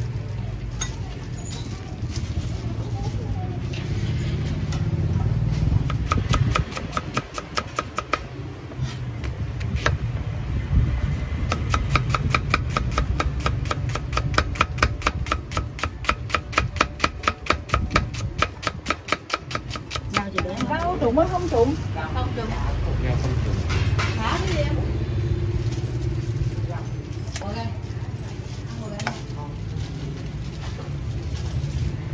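Cleaver chopping onion on a round wooden chopping block in quick, even strokes, about four a second: a short run about seven seconds in and a longer run from about twelve to nineteen seconds in.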